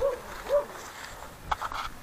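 A dog whimpering: two short, high whines that rise and fall in pitch, in the first half second, followed by a few faint clicks.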